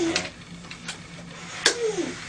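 Quiet small room with a faint steady low hum and a couple of soft clicks, framed by brief bits of voice at the start and near the end.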